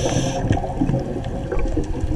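Underwater scuba breathing through a regulator: a hiss of inhaled air that stops about half a second in, then low gurgling and rumble of exhaled bubbles.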